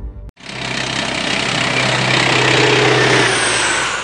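A loud engine roar that builds over about two seconds, holds with a steady low hum underneath, then fades away near the end.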